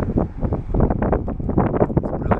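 Wind buffeting the microphone: a loud, irregular low rumble that comes and goes in gusts.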